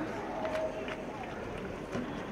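Faint voices of people talking nearby over a steady outdoor background hiss, with one voice briefly clearer about half a second in.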